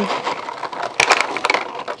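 Clear plastic packaging tray crackling and clicking as over-ear headphones are pulled out of it, with a cluster of sharp clicks about a second in.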